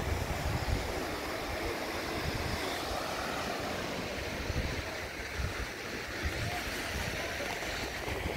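Surf washing on a sandy beach, a steady rush, with wind gusting on the microphone in uneven low rumbles.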